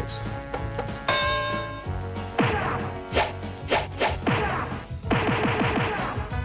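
An electronic sound-effects mixer playing a programmed sequence of effects: a held tone about a second in, then a series of short effects with quickly falling pitch, and a crash near the end.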